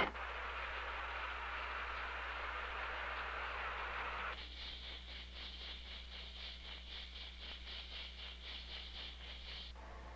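Underwater sound as heard over sonar: a steady hiss of water noise, then from about four seconds in a rapid, even beat of about five pulses a second, the propeller beats of the target submarine, stopping just before the end.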